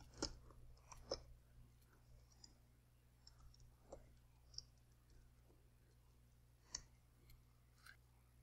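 Near silence, broken by a few faint, scattered clicks of computer keyboard keys as text is typed.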